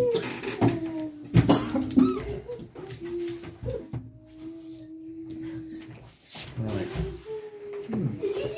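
Small magnet stones clicking and clacking against each other as a hand gathers a clumped chain of them, with a cluster of sharp clicks about a second and a half in and more near the end. A person hums a low note through the middle.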